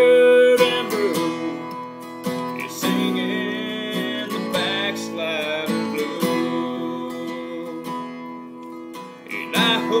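Acoustic guitar strummed to accompany a man singing a country song.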